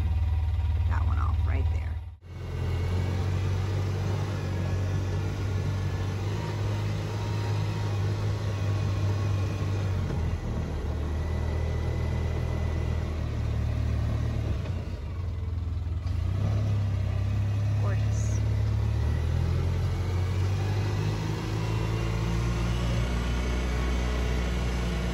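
Small vehicle engine running while driving along a dirt track, its low hum stepping up and down in pitch with the throttle. The sound cuts out briefly about two seconds in.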